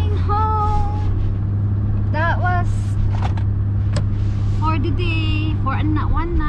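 Steady low drone of a car in motion, engine and road noise, heard from inside the cabin, with a woman's voice over it.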